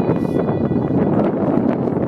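Wind buffeting the microphone: a steady, rough noise.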